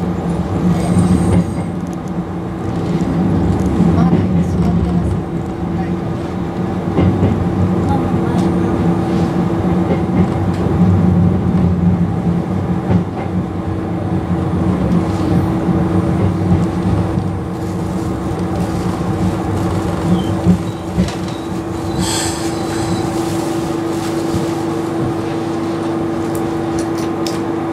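Izukyu Resort 21 electric train heard from inside the front of the car, running slowly with a steady rumble and hum. The running rumble dies away about three-quarters of the way through as the train comes to a stop, leaving a steady hum.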